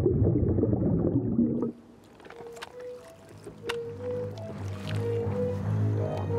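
A deep, dense underwater rumble that cuts off abruptly a little under two seconds in. It gives way to a quiet stretch with a few sharp small clicks and sparse, soft musical notes that build toward the end.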